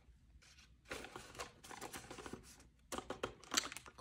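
Faint crinkling and rustling as a clear vinyl binder pocket and paper bills are handled, with a few sharp clicks near the end.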